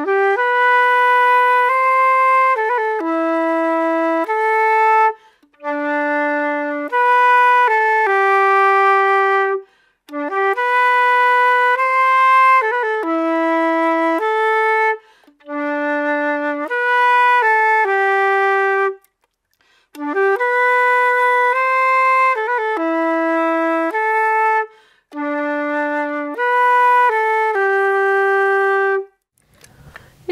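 Silver concert flute playing an Estonian bagpipe waltz tune slowly, starting with a pickup bar. The notes are clear and held, in short phrases with a brief breath pause about every five seconds.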